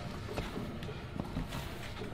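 Faint rustling and a few scattered light clicks of a hand digging through dry bedding in a plastic tub of worms.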